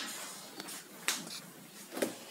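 A few short, sharp clicks in a small room, the loudest about a second in and another near the end, with faint room tone between.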